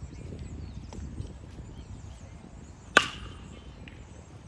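Baseball bat striking a pitched ball in batting practice: one sharp, loud ping about three seconds in, with a brief ringing tail.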